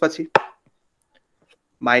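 A man's voice trails off, then a single sharp tap about a third of a second in, followed by a few faint ticks.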